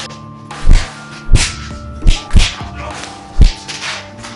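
Five punch-and-kick impact sound effects of a staged fight, each a swish ending in a heavy thud, two of them in quick succession, over background music.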